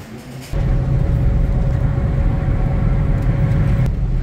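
A car running, heard from inside its cabin: a steady low rumble that starts abruptly about half a second in, with a faint steady hum above it.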